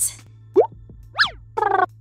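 Intro jingle of cartoon sound effects over a steady low hum: a rising swoop about half a second in, a quick chirp that slides up and back down, then a short buzzy tone near the end.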